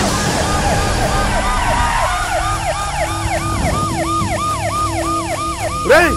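Police vehicle siren wailing in a fast up-and-down yelp, about three rises a second, over a low rumble. It stops right at the end.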